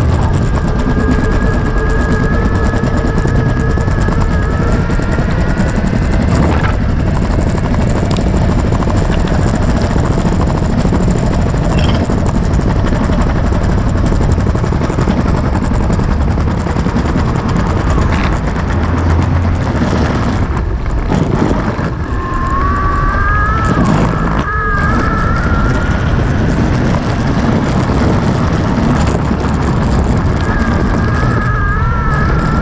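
Six-wheel electric skateboard riding over pavement: a loud, continuous rumble of its wheels on the surface, with a few short knocks. The high whine of its electric drive motors rises in pitch near the start and again a little after the twenty-second mark.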